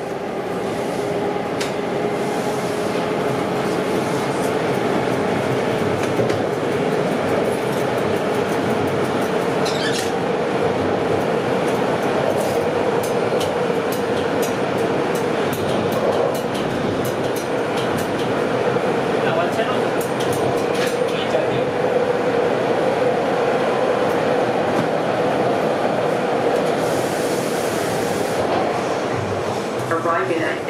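Bombardier T1 subway car running at speed through a tunnel, heard from inside the car: a steady rumble of wheels on rail with one held whine, and a few light clicks about ten to fifteen seconds in.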